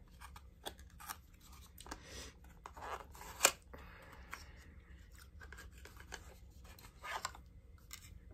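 Cardboard advent-calendar door being opened and the small product inside handled: faint scrapes, rubs and light clicks, with one sharper click about three and a half seconds in.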